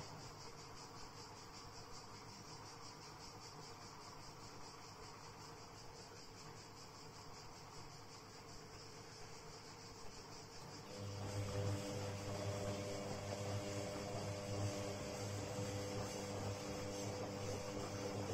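Castor C314 front-loading washing machine on a cotton wash. Its drum stands still for about eleven seconds with only a faint hiss, the pause in the wash cycle's stop-and-turn rhythm. Then the motor starts again with a low, steady hum and the drum turns the wet laundry.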